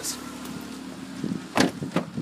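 A small hatchback's front door being shut, one solid thud about one and a half seconds in, followed by a lighter knock just before the end.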